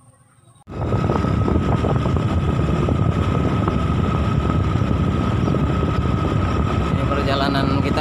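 Wind rushing over the microphone, with engine and tyre noise from a vehicle moving along a paved road. The sound starts suddenly about a second in and then runs loud and steady.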